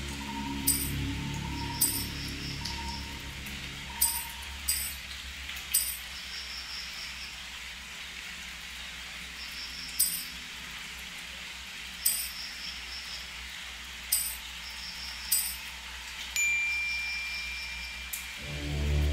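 Ambient background soundscape: short bright clinks every one to two seconds over a steady hiss. A low drone fades out in the first few seconds, and a thin steady high tone comes in near the end.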